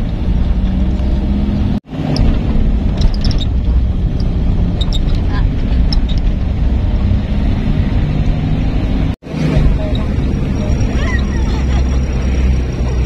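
Engine and road noise of a moving vehicle heard from inside its cabin, a loud steady rumble that cuts out abruptly twice, about two seconds in and again about nine seconds in.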